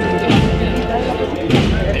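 A wind band playing a procession piece, with people's voices close by over the music.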